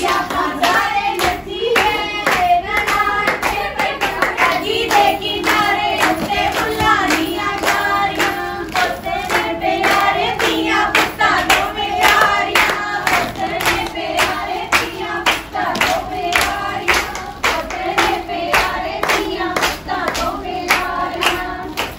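A group of women singing a Punjabi gidha folk song together, keeping a steady beat with hand claps.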